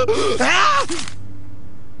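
A cartoon character's voiced yell, about a second long, rising and then falling in pitch before breaking off.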